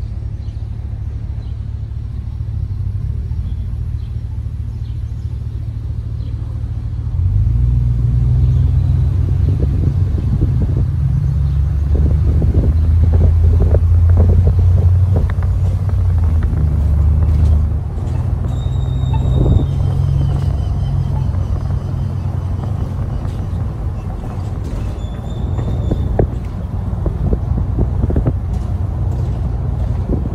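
A vehicle driving slowly, its engine and road rumble heard from inside the cabin. The rumble grows louder about seven seconds in.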